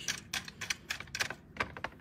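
Light, irregular metallic clicks from a bolt being turned by hand on a rail plate seated in a steel strut channel.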